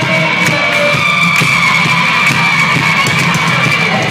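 Live rock band playing loud, with a single high note held almost the whole time, heard from within the crowd through a phone's microphone.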